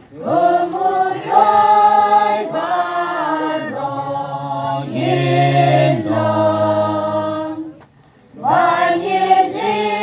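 A choir singing a hymn in long, held phrases, with a short break about eight seconds in before the singing resumes.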